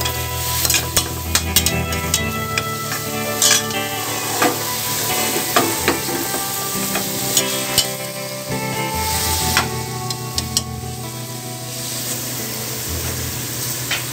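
Sliced onions, green chillies and whole spices sizzling in hot oil in an aluminium pressure cooker, stirred with a spatula that scrapes and clicks against the pot. The clicking thins out in the last few seconds.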